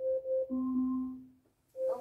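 Phone alarm tone playing: a short electronic jingle of a few quick notes at one pitch followed by a longer, lower note, repeating about every second and a half.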